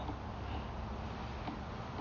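Quiet, steady background noise with no distinct events.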